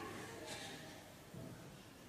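A pause in a man's speech: faint room tone, with the end of his voice fading out just after the start.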